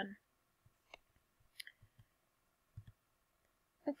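A few faint, isolated clicks as the presentation is advanced to the next slide, with a soft low bump later on, over near silence.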